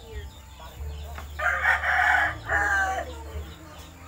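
A rooster crowing once, starting about a second and a half in and lasting about a second and a half, with a brief break before its drawn-out end.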